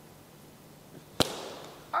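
One sharp slap of a hand, a single crack about a second in.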